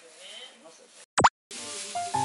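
A short cartoon-style 'plop' sound effect: one quick, loud swoop of pitch up and down, used as a scene transition, followed a moment later by light background music starting.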